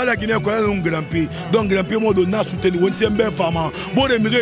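A young man rapping in quick, unbroken lines into a handheld microphone.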